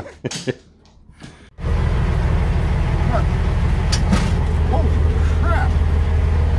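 A semi truck's diesel engine idling with a steady, loud low hum, starting suddenly about a second and a half in. Brief laughter comes just before it.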